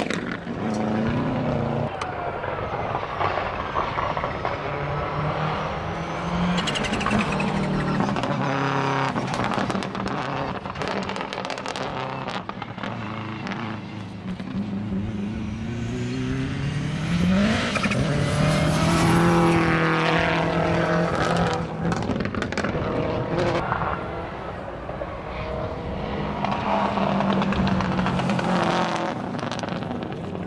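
Rally cars at full throttle, engines revving and dropping repeatedly through gear changes as they pass. One long rising rev comes a little past halfway, and sharp cracks run through the whole stretch.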